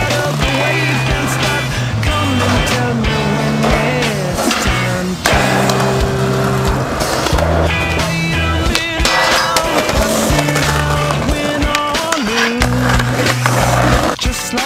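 Rock music with bass and drums, mixed with the board's own sounds: skateboard wheels rolling on concrete and the clack of the board.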